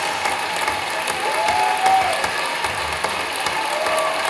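Audience applauding steadily, a dense clatter of clapping hands.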